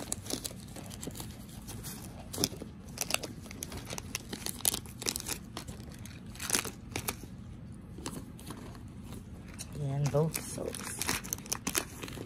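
Toiletries and plastic-wrapped packets being tossed and pushed into a zippered cosmetic pouch: irregular crinkling of plastic packaging and small clicks and knocks of bottles and tubes.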